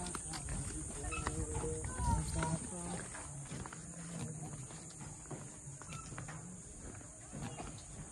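Faint on-location ambience on a pedestrian suspension bridge: murmuring voices of nearby people, loudest about a second or two in, and scattered footsteps on the bridge's metal deck, over a steady high hiss.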